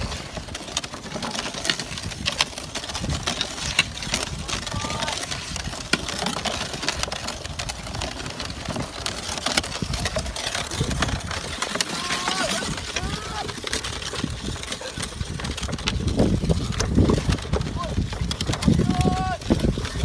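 Small wooden cart drawn by two rams rattling and knocking as it rolls over a dirt road, with the rams' hooves clopping: a steady run of small irregular knocks. Wind rumble on the microphone in the last few seconds.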